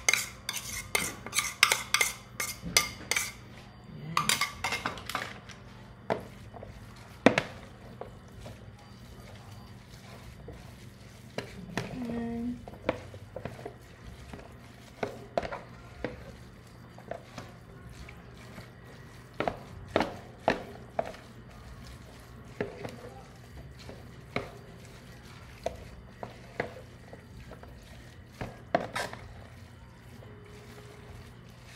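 Spoon tapping and scraping against a ceramic bowl in quick succession for the first few seconds as ground meat is emptied into a plastic tub of rice. Then the rice is mixed in the plastic tub, with scattered knocks and clicks against its sides.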